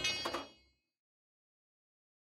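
Silence: a short pitched sound fades out within the first half second, followed by complete silence.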